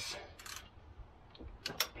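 Ratchet wrench and socket being handled and fitted onto a blanking plug in an engine bay: a few scattered sharp metallic clicks and taps, with a small cluster near the end.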